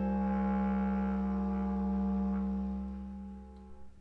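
Bass clarinet and piano: a long held low note over a sustained chord, fading away about three-quarters of the way through.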